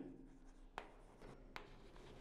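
Chalk writing on a blackboard, faint scratching with a couple of light taps as the letters are formed.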